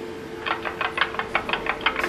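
Metal spoon beating eggs in a stainless steel bowl, clicking quickly against the bowl's side about six times a second from about half a second in.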